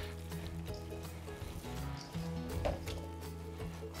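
Soft background music with long held notes. Under it, faint wet squishing of bare hands kneading raw ground beef and pork in a stainless steel mixing bowl.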